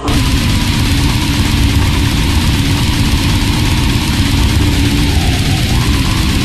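Heavily distorted grindcore band, with a dense wall of guitar, bass and drums, cutting in abruptly at full volume and running on loud and unbroken.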